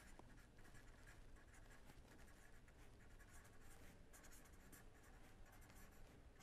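Faint scratching of a pen writing on paper, a steady run of quick short strokes as words are written out by hand.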